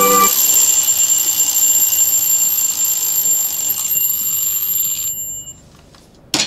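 Alarm clock ringing steadily, waking a sleeper; it cuts off about five seconds in as it is switched off. Music fades out just at the start.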